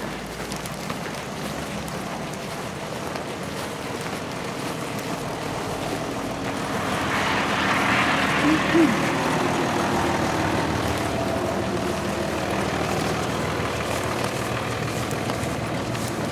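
Street traffic on a snowy road: cars driving past, the noise growing louder over the first half and then holding steady.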